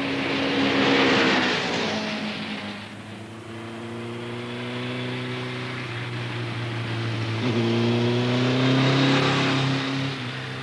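Big Kawasaki motorcycle engine running hard on a race track. The engine note drops about two seconds in and climbs again in the last few seconds, where it is loudest.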